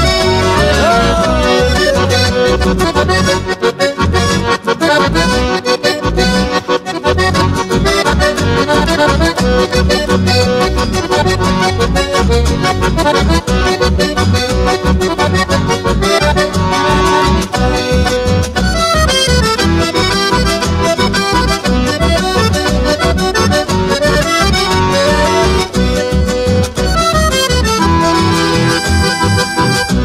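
Chamamé played by a live band in an instrumental passage: a button accordion carries the melody over guitars and an acoustic bass that keeps a steady rhythmic pulse.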